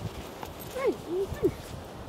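Soft, irregular steps on packed snow, with a short call of "hey!" about a second in.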